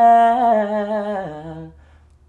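A woman singing unaccompanied: one long held note with a slight waver, which steps down to a lower note past a second in and fades out.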